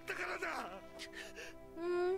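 A man's tearful, sobbing voice speaking Japanese anime dialogue over steady background music; near the end a second crying voice begins.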